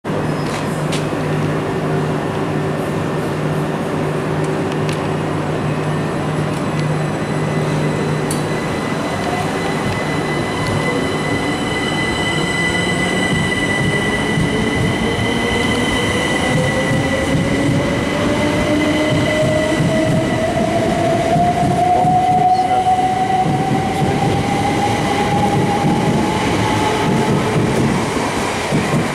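12-car Southern class 377 Electrostar electric multiple unit pulling away. A steady hum while it stands gives way, about a third of the way in, to a traction-motor whine that climbs steadily in pitch as the train gathers speed, over wheel and rail noise.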